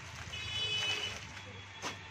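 Clear plastic packaging rustling and crinkling as a folded lawn suit is slid out of its bag, loudest in the first half, with a brief high-pitched tone over the rustle and a sharp click near the end.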